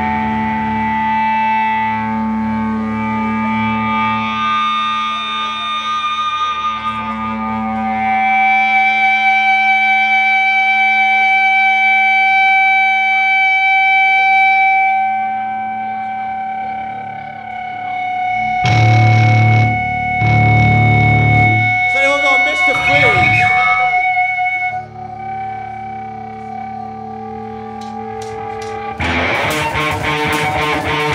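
Live rock song intro on distorted electric guitars: held, ringing notes through effects units. About two-thirds of the way through come a few heavy low hits and then bending, sliding notes. Near the end the full band comes in together.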